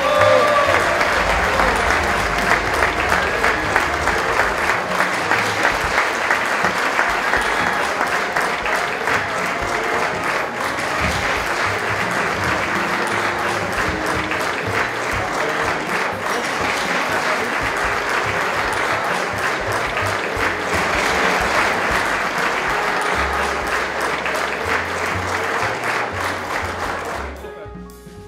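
Audience applauding steadily, a dense clatter of many hands clapping that fades out near the end.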